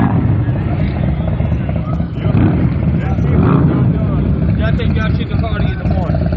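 Harley-Davidson V-twin motorcycle engines running close by, a loud, uneven low rumble, with people talking underneath it.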